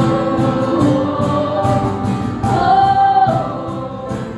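Live worship band: women singing a worship song with acoustic guitar and keyboard over a steady percussion beat of about three strokes a second, with a long held sung note near the end.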